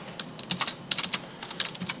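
Computer keyboard typing: a run of irregular key clicks as a line of code is typed.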